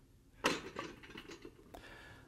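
Handling noise from a heavy lead brick on a scale: a knock about half a second in, then faint clicks and rattles that fade away.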